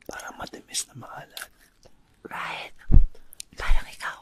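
Soft whispered speech with small clicks, and two loud low thumps, one about three seconds in and one near the end.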